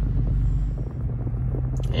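Low, steady rumble of a 2018 Toyota 4Runner's 4.0-litre V6 running as the SUV reverses out of a garage, heard from inside the cabin, with a brief click near the end.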